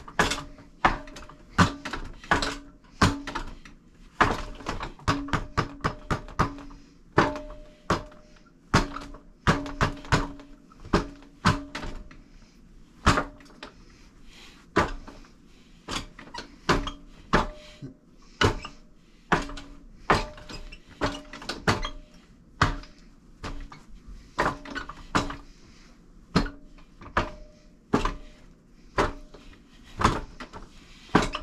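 Forearms and hands striking the wooden arms of a four-armed Wing Chun wooden dummy: sharp wooden knocks in quick irregular clusters, one to three a second. Some knocks leave a short low ring from the struck wood.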